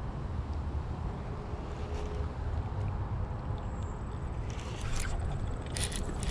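Wind buffeting the microphone: a steady low rumble, with a few short crackles and clicks near the end.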